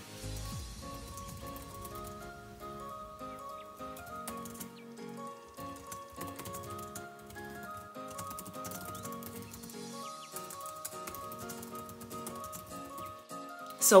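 Soft background music of held melodic notes, played at a moderate level.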